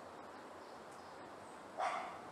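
A dog barks once near the end, a single short bark over faint steady outdoor background noise.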